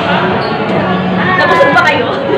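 Voices of people talking close by, over the general noise of a crowded room.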